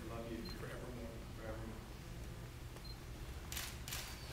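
Camera shutter clicking twice in quick succession near the end, after quiet speech in the first second or so.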